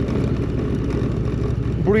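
Indian motorcycle's V-twin engine running steadily as the bike rides along a dirt road, with a low, even rumble and faint wind and tyre noise; a short spoken word comes in right at the end.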